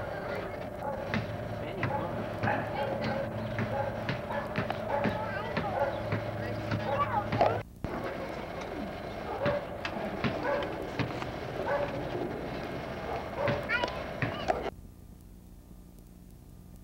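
Indistinct voices of people talking outdoors, no words clear, with a short break in the sound about halfway through. About a second before the end the sound cuts off suddenly, leaving only faint tape hiss.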